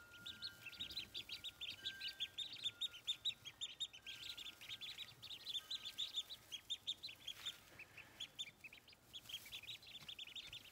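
A brood of Khaki Campbell ducklings peeping continuously, many short high peeps overlapping several times a second.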